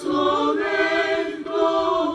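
Mixed choir of women's and men's voices singing a cappella in sustained chords.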